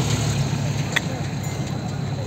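A vehicle engine idling with a steady low hum, with one short knock about halfway through.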